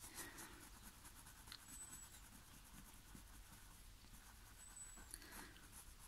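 Faint scratching of a wax crayon being rubbed over drawing paper, barely above near silence.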